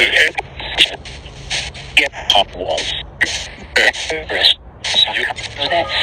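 Spirit box sweeping through radio stations: a choppy stream of clipped radio voice fragments and static, cutting in and out every fraction of a second. The investigators caption the fragments as the phrase "without the flop".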